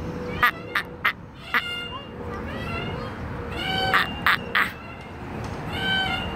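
A baby vocalising in short, sharp "ah" sounds, in quick runs of three or four: one run about a second in and another around four seconds in.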